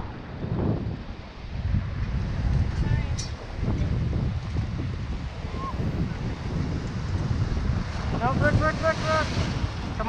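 Wind buffeting the microphone over surf breaking around concrete jetty pilings. A voice calls out near the end.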